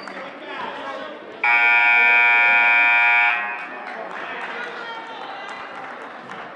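Gym scoreboard buzzer sounding one loud, steady horn blast about two seconds long, starting about a second and a half in, over crowd chatter.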